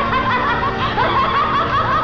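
A woman's high-pitched, manic laughter: a fast run of short rising-and-falling "ha" notes, about four or five a second.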